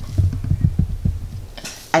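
A rapid, irregular run of soft, dull low thumps, about a dozen, stopping about a second and a half in.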